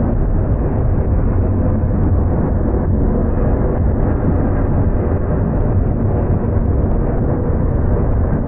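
Freight train rolling past close by: a loud, steady low rumble of wheels on rail.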